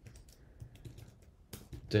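Typing on a computer keyboard: a quick run of light key clicks.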